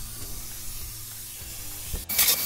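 Polyurea spray gun hissing steadily as it sprays coating, with a low rumble underneath.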